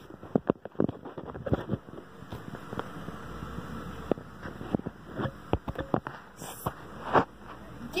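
Handling noise from a handheld camera being carried around: scattered sharp knocks, clicks and rustles, with a faint low hum in the middle.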